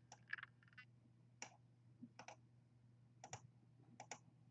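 Faint computer mouse clicks, a handful spread across a few seconds, some in quick pairs.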